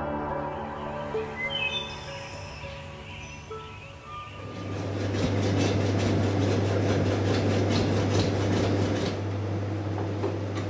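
Soundtrack music fades out, then a bow saw cuts through a foil-wrapped peat core in steady back-and-forth strokes over a steady low hum.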